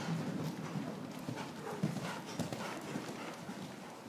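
Hoofbeats of a ridden horse cantering on soft sand arena footing, a quick run of dull thuds as it comes close by.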